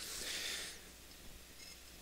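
Faint gritty scrape of a concrete retaining-wall cap block being slid into place on the block below, fading out under a second in. After that there is only quiet room tone.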